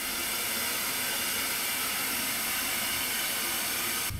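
Analog TV static: the steady, even white-noise hiss of a CRT set showing snow with no signal, cutting off suddenly near the end.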